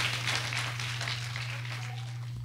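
Congregation applauding, the clapping thinning out, over a steady low hum.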